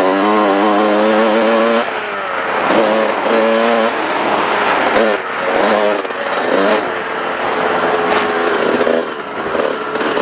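Motocross dirt bike engine ridden hard, its revs held high and steady for the first couple of seconds, then rising and dropping again and again as the throttle is worked through the turns and shifts.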